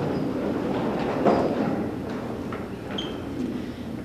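A roomful of people standing up from metal-legged chairs: chairs scraping and knocking on the floor, clothes rustling and feet shuffling, with a couple of short squeaks.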